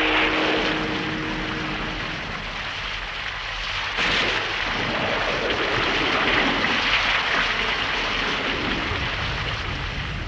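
Sound effect of a heavy rainstorm: a steady rush of pouring rain and wind, with a sudden louder surge about four seconds in.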